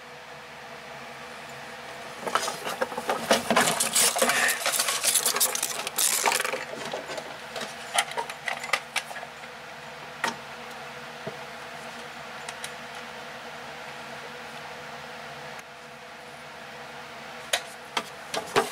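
Plastic clattering and scraping on a wooden shelf as a VHS cassette is handled and taken away, a dense run of clicks from about two to six seconds in, then a few single clicks, over a steady low hum.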